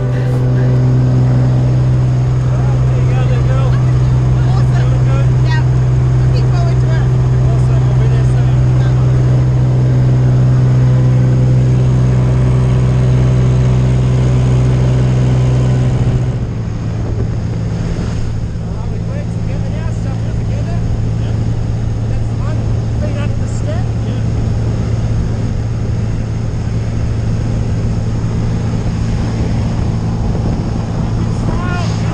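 Single-engine light aircraft's piston engine and propeller running steadily, heard inside the cabin as a loud, even drone. About sixteen seconds in, the drone drops slightly in pitch and level.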